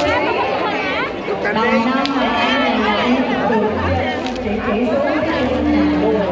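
Several people talking at once nearby, overlapping conversational chatter, with a brief click about two seconds in.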